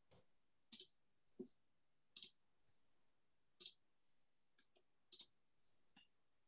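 Faint computer mouse clicks, about six at irregular intervals of roughly a second, with a few fainter ticks between them, over near silence.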